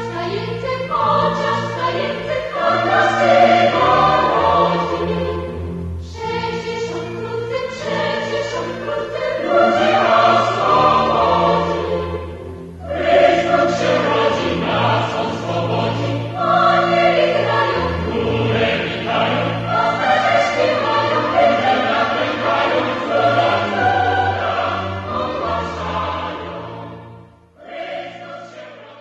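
Choir singing with instrumental accompaniment, in three long phrases, fading out near the end.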